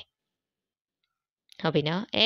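Dead silence for about a second and a half, a gap in the recording. Then a teacher's voice starts speaking Burmese again.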